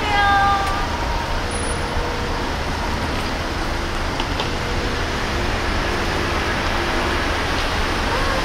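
Steady outdoor traffic and vehicle noise at an airport drop-off curb: a continuous hiss over a low rumble, without a break.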